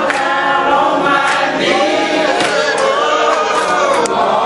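Church deacons singing together as a group, joined by the congregation, with sharp percussive beats about once a second keeping time.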